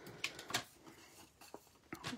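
Cardstock strips being handled at a paper trimmer: a few faint clicks and light paper rustling.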